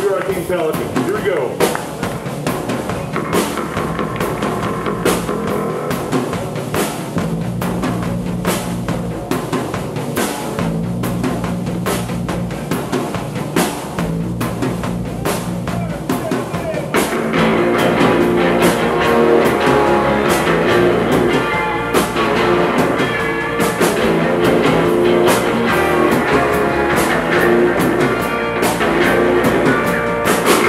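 Surf rock band playing live: the song opens sparse, on a drum beat with a low bass line, and the full band with electric guitars comes in louder a little past halfway.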